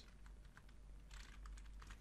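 Faint computer keyboard typing: a few scattered key presses as a formula is finished off with a closing quote and bracket.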